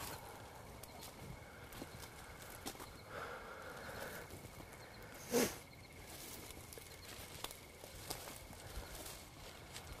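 Faint footsteps and rustling of brush and grass as a person walks slowly through undergrowth, with one brief, louder swish about five seconds in.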